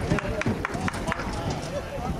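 Men's voices calling out across an outdoor rugby pitch. In the first second there is a quick, irregular run of about seven sharp clicks.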